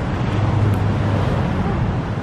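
Steady city street background noise with a constant low hum, from traffic.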